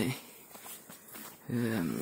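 A man speaking Romanian, with a pause of about a second and a half between words.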